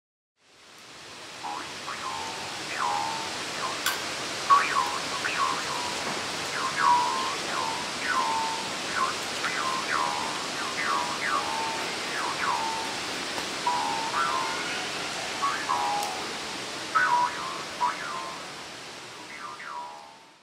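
Steady hiss of rushing water, with a bird's short chirps on top, each falling in pitch, repeated about once or twice a second.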